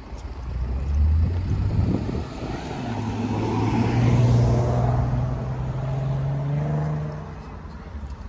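A car driving past, its engine note rising steadily as it speeds up, loudest about halfway through and then fading away.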